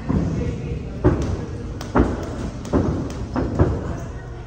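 Sparring thuds and slaps from two fighters grappling: body contact, strikes and a takedown onto the mat, with four sharp impacts spread roughly a second apart.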